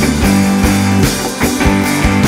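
Rock band playing live in an instrumental stretch with no singing: electric guitars over a drum kit with steady drum strikes and cymbals.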